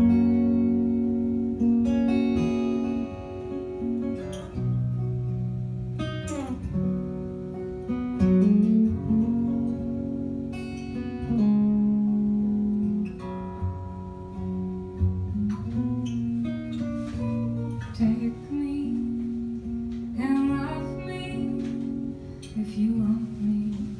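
Acoustic guitar played fingerstyle as the song's introduction: single plucked notes ring on and overlap, with a few notes sliding in pitch.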